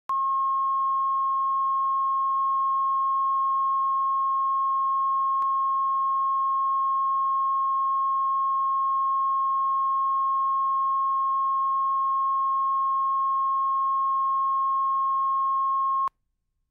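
Broadcast line-up tone: a steady, unbroken 1 kHz sine tone that goes with the colour bars at the head of a videotape, used to set audio levels. It cuts off suddenly at the end.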